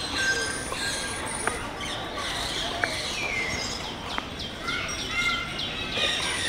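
Birds chirping: many short, high calls and quick pitch glides over a steady background hubbub, with a few sharp clicks.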